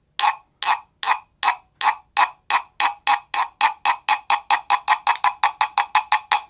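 Small guiro scraped with a stick in short, regular strokes with a grainy wooden rasp. The strokes speed up from about two or three a second to about five a second.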